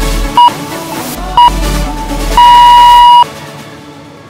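Countdown timer beeps over electronic dance music: two short beeps a second apart, then one longer beep, marking the end of the rest interval. The music stops with the long beep.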